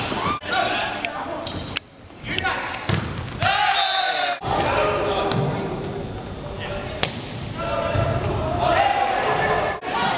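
Players and spectators calling out and shouting in a gymnasium during volleyball rallies, with a few sharp slaps of the ball being hit. The sound breaks off suddenly several times where the rally clips are cut together.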